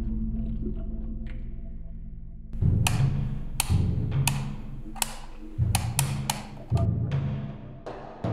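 Horror film score: a low droning chord fades, then about two and a half seconds in a series of deep booming percussion hits begins, each opening with a sharp crack and coming at uneven intervals.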